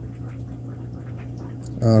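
Steady low hum with a faint hiss, the sound of running aquarium equipment.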